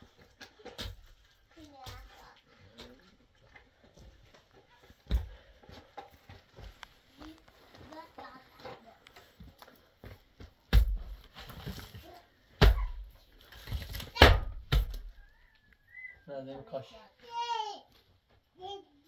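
Pickaxe striking hard-packed earth and rubble: several dull thuds a second or two apart, the loudest in the second half.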